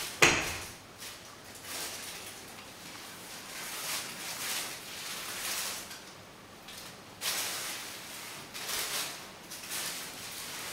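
One sharp clack just after the start, then soft shuffling noises at irregular intervals every second or so, as someone walks through an empty room with a handheld camera.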